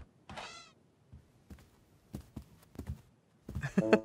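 A short high squeak falling in pitch, then a run of light footsteps approaching, and a person's voice exclaiming near the end.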